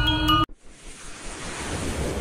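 Background music with glockenspiel-like mallet tones cuts off abruptly about half a second in. A rushing whoosh sound effect for an animated logo intro swells up in its place, slowly growing louder.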